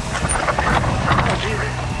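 Downhill mountain bike rattling over rough rock: a rapid clatter of tyres, chain and suspension over a steady rush of noise.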